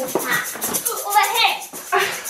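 A hand rattle shaken quickly and evenly, a fast run of hissy strokes, with voices talking over it.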